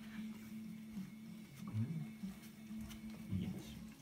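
Faint scuffling and light scratching of puppies playing on a fleece mat and pawing at a cardboard drink carrier.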